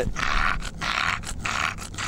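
English bulldog panting close to the microphone, with quick, even, noisy breaths about four times a second, a dog cooling itself in the heat.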